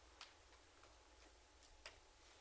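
Near silence: room tone with a few faint clicks, the clearest two about a quarter second in and near the end.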